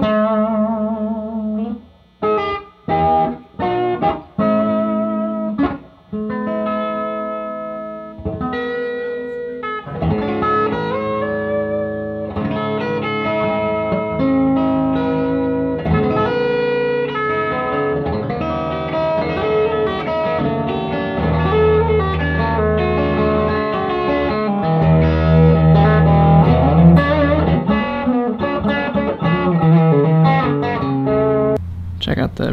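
Gibson Les Paul Junior electric guitar played through an amp: short phrases of single notes with bends and vibrato, broken by brief pauses, then from about ten seconds in a continuous run of notes and chords over held low notes.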